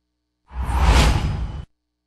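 Whoosh sound effect of a TV station's logo transition, about a second long, with a deep low rumble under it, swelling and then fading.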